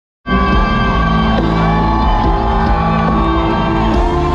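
Loud live concert music through a stadium PA, held notes with sliding vocal lines, and the crowd shouting along. The sound cuts in abruptly just after the start.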